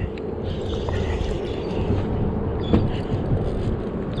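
Steady low rumble of wind on the microphone out on open water, with a couple of faint clicks.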